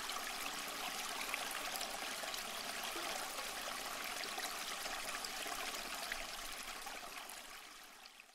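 Aquarium water trickling and splashing steadily, fading out near the end.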